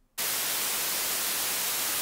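White noise from a DIY transistor noise generator: a steady, even hiss that cuts in abruptly just after the start.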